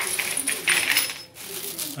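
Plastic bag crinkling as it is handled, with the small metal valve lifters inside clinking against one another. The loudest bursts come in the first second.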